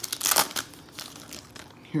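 Foil wrapper of a Topps Prime football card pack crinkling and tearing as it is pulled open by hand, loudest in the first half second, then softer rustling.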